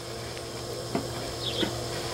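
Handling of the small plastic parts of a Taylor K-2006 pool test kit, its reagent dropper bottle and sample comparator, with a light knock about a second in and a softer one half a second later.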